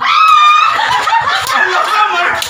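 A group of people laughing and squealing. It opens with one high-pitched shriek held for about half a second, then several voices laugh and call out over one another.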